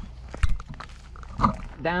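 Rustling of roots and soil as gloved hands push a bare-root tree's roots down into a planting hole, with two sharp knocks about half a second and a second and a half in.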